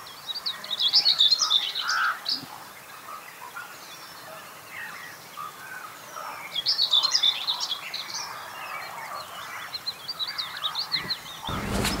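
High-pitched animal chirping calls in three bursts of a second or two each, a few seconds apart, over a quiet background.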